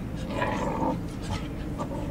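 Two English Cocker Spaniels play-wrestling, making short vocal noises; the longest comes about half a second in and lasts about half a second.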